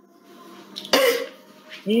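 A man clears his throat with one loud, sudden rasp about a second in, then starts speaking right at the end.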